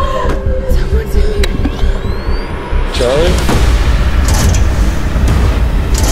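Horror-trailer soundtrack: a low rumbling drone with scattered clicks and thin rising whooshes, swelling about halfway through into a denser, louder rumble with occasional hits.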